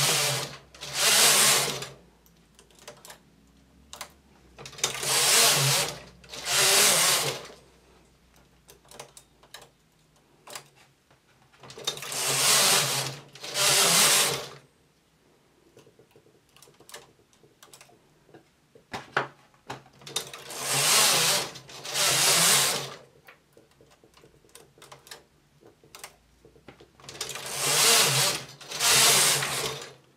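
Domestic flat-bed knitting machine carriage sliding across the metal needle bed, a rushing, rattling pass heard in pairs (across and back) four times. Between the pairs come light clicks of a hand transfer tool and needles as one stitch is moved in each row to decrease the armhole.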